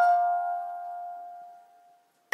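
A single bell-like mallet-percussion note from a slow lullaby melody, in the manner of a glockenspiel, struck once at the start and left ringing, fading away over about a second and a half.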